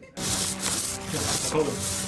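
A hand tool rubbing against an interior wall as it is worked over: a steady, scratchy scraping, close and loud. Faint voices sound beneath it.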